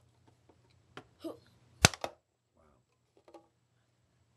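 A few light clicks and one sharp knock a little under two seconds in: a small toy figure on a toy skateboard knocking against a homemade metal-box and wooden ramp.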